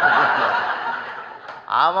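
Audience laughter at a punchline, loudest at the start and dying away over about a second and a half; the man speaking into the microphone resumes near the end.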